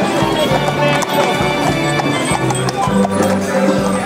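Music playing over the hooves of a pair of carriage horses clip-clopping on brick paving as they walk off pulling a carriage.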